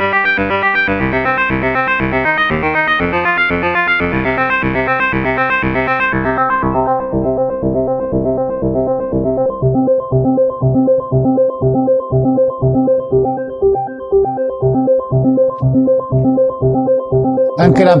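Korg Nu:Tekt NTS-1 digital synthesizer playing a fast, steady run of repeating notes. About six seconds in, the tone turns duller and loses its bright top as the oscillator is switched to a triangle wave.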